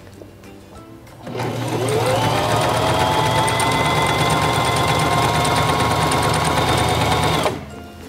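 Singer Simple 3232 sewing machine stitching a wide multi-step zigzag: the motor starts about a second in, whines up to speed and runs steadily with a rapid, even ticking, then stops shortly before the end.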